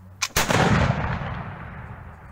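A flintlock musket fired once: a short click, then a split second later a loud shot whose echo rolls away over about a second and a half.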